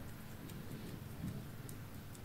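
Faint, sparse little clicks and ticks of a wooden eyebrow pencil being handled and turned between the fingers, with one soft low thump about a second in.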